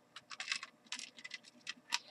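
Faint, irregular light clicks and ticks, several a second.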